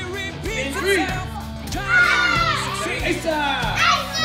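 Background music playing, with several children's high voices calling out over it.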